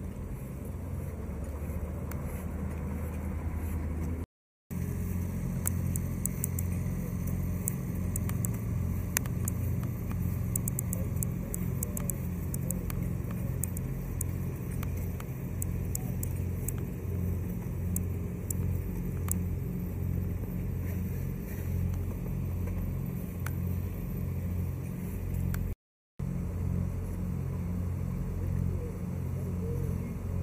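An engine running steadily with a low, pulsing hum, with scattered faint ticks over it through the middle. The sound drops out for a moment twice.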